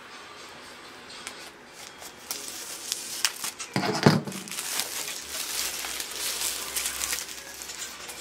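Plastic shrink-wrap crinkling and tearing as it is cut and pulled off a photo frame. It is quiet at first and becomes a dense crackle from about two seconds in. A brief voice sound comes about halfway through.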